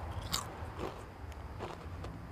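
A crisp potato chip bitten with a loud crunch about a third of a second in, then chewed with a few softer crunches.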